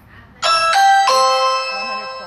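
Loud electronic three-note chime: two short notes, then a longer, lower note that slowly fades.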